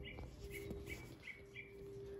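A bird chirping in the background: short, repeated chirps, two or three a second, over a faint steady hum.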